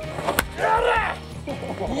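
White ash wooden baseball bat hitting a ball once, a single sharp crack about a third of a second in.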